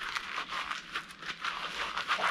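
Gloved hands rubbing and twisting scrap wire together, a steady crinkly, scratchy rustle made of many small irregular ticks.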